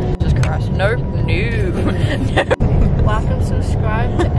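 Steady low rumble of a moving coach, engine and road noise heard from inside the passenger cabin, with voices over it.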